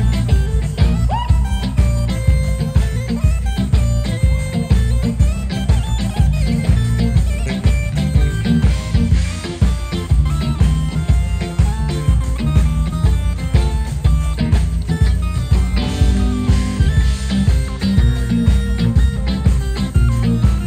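Live soul band playing: drums and bass keep a steady groove under a keyboard solo.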